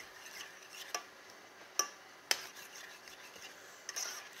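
Metal spoon stirring a thick pumpkin-seed stew in a stainless steel saucepan, with three sharp clinks of the spoon against the pan, the loudest a little over two seconds in.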